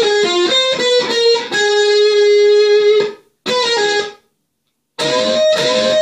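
Electric guitar, a gold-top Les Paul-style, playing a lead lick high on the neck: a quick run of picked notes, then one long sustained note, then a short phrase. It stops dead for about a second, then comes back with a bent note rising in pitch near the end.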